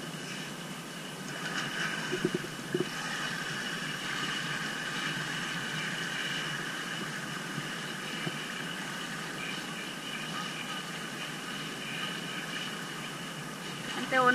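A steady mechanical hum with faint high whining tones held throughout, and two short knocks about two to three seconds in.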